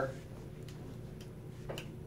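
Pause in a lecture: quiet room tone with a faint steady hum and a few faint ticks about half a second apart, ending in a slightly louder click just before speech resumes.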